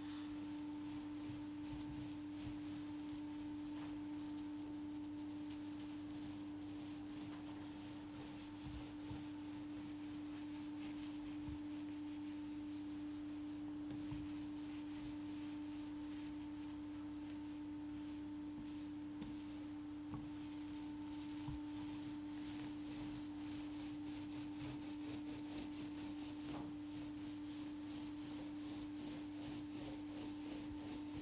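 A steady one-note hum that does not change, with faint soft rubbing of a small paint roller spreading primer over the boat's roof.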